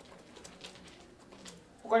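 Quiet room tone with a few faint clicks, then a voice starts speaking just before the end.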